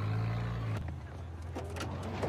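Vehicle engine hum from a TV episode's soundtrack, low and steady, dropping away just under a second in to quieter street ambience with a few faint clicks.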